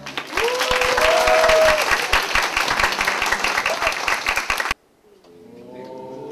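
An audience applauding, with a few cheering voices, for about four and a half seconds, then cut off abruptly. Quiet music fades in near the end.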